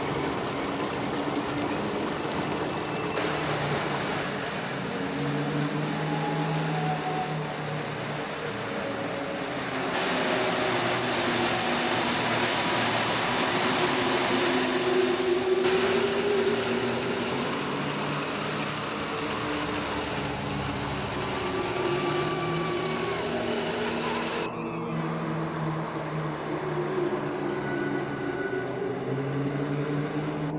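Rushing stream water over rocks, a steady hiss that changes suddenly several times, loudest through the middle. Under it runs slow ambient music of long, low held notes that gently rise and fall.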